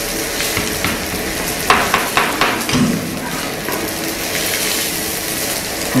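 Food sizzling as it fries in pans on the stove, with a short run of metal utensil clatters against the pans about two seconds in.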